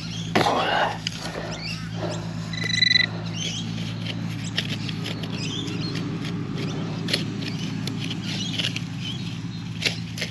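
Hands and a digging knife scraping and poking in wet, claggy soil and grass roots, giving scattered small clicks and rustles. A metal-detecting pinpointer gives a short steady beep about two and a half seconds in. A steady low hum runs underneath throughout.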